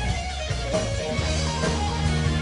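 Rock band playing live, with electric guitar to the fore.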